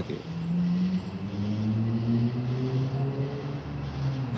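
Steady low mechanical hum, like an engine running, made of several held low tones whose pitch drifts slowly.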